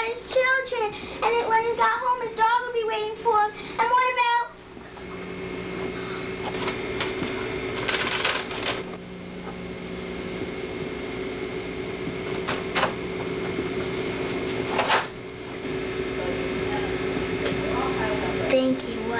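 A girl sings a short wavering tune for about four seconds; after it stops, a steady electrical hum runs on with a few short clicks.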